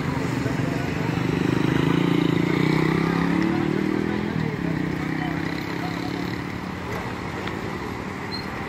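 A passing motor vehicle's engine on the road, growing louder over the first couple of seconds and then fading away.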